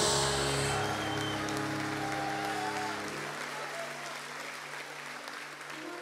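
Stage keyboard holding sustained chords while the audience applauds; the applause is strongest about the first second, then the whole sound fades gradually.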